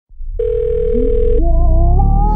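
A telephone beep, one steady tone about a second long, over the opening of a slow beat with deep bass; a rising melodic line comes in after the beep.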